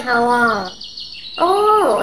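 A woman's voice drawing out two long vocal sounds with a short break between them: the first slides down in pitch, the second rises and then falls.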